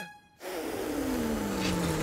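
Cartoon whoosh of blowing wind, the wolf's huff against the house, starting after a brief silence, with a slowly falling tone beneath it and music.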